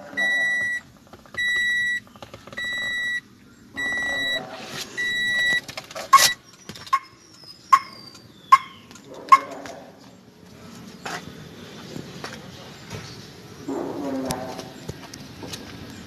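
Toyota Vios cabin warning buzzer beeping five times at an even pace, about one beep a second, then stopping. It is followed by five sharp clicks less than a second apart, with faint voices in the background.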